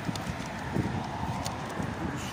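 Footsteps of a person walking, a hard step about every two-thirds of a second, picked up by a handheld camera, with a low rumble underneath.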